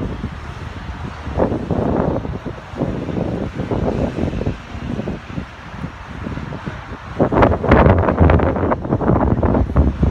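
Wind buffeting the microphone in uneven gusts, with a low rumble, strongest in the last few seconds.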